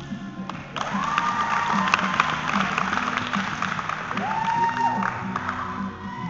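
Audience clapping and cheering over background music, starting suddenly about a second in and easing off near the end, with two high rising shouts among the cheers.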